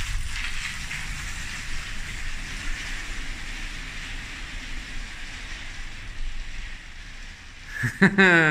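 Studded tyres of an electric bicycle rolling over a concrete floor: a steady hissing patter that eases as the bike rides away.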